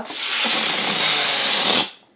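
Air rushing out of the neck of an inflated latex balloon as it is let down, a loud steady hiss lasting just under two seconds that stops as the balloon empties.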